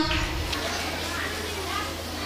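Background murmur of children's chatter in a large hall, with a steady low hum underneath.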